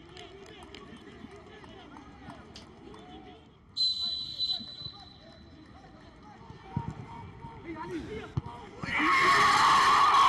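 Players' and coaches' shouts carrying across a nearly empty football stadium, with a referee's whistle blown once, briefly, about four seconds in. About nine seconds in, loud shouting breaks out as the ball goes into the goalmouth.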